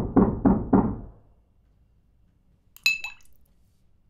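Heavy knocking on a door, a quick run of knocks about four a second that stops about a second in. Near three seconds in, a single bright clink that rings briefly.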